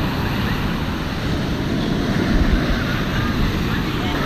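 Surf breaking and washing up a shallow sandy beach, a steady rush of water, with wind rumbling on the microphone; the rumble swells about halfway through.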